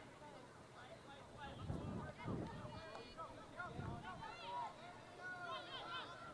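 Faint voices of players and a coach shouting on a soccer pitch, heard from the field microphone, with overlapping calls such as 'go, go, go'.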